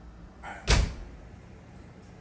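A door shutting: a light click, then one loud thud that dies away quickly, about two-thirds of a second in.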